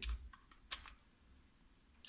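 A 23-way rotary selector switch turned by hand to its next position, giving a few light clicks and then a sharper detent click just under a second in.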